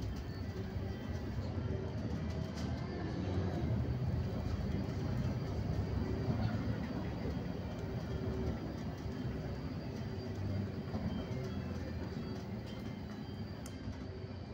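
Steady low rumble of road and engine noise heard from inside a moving road vehicle.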